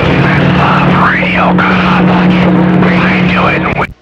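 CB radio receiving a distant skip station: a steady low hum from the incoming signal, with whistling tones sliding up and down over it and a garbled voice underneath. It cuts off abruptly just before the end as the radio is switched to transmit.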